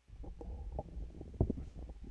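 Microphone handling noise: low rumbling and dull knocks as a handheld microphone is moved about in its stand clip. It starts abruptly, with the loudest knock around the middle.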